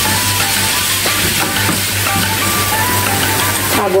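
Ground beef frying in olive oil in a pan, sizzling steadily under background music.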